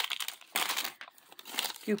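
Thin printed wrapping from a small toy packet crinkling in the hands in irregular crackly bursts as it is pulled open around the items inside.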